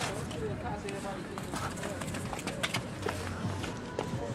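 Indistinct voices over music, with several sharp clicks and knocks about one and a half to three seconds in.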